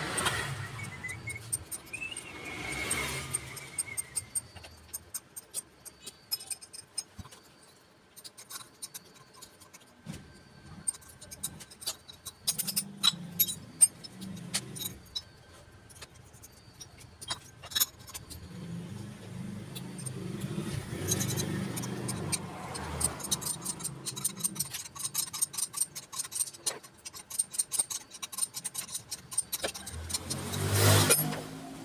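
Hand tools and small steel parts clinking and clicking in irregular bursts against a scooter cylinder head as it is taken apart. A low rumble from a vehicle in the background swells and fades twice in the middle.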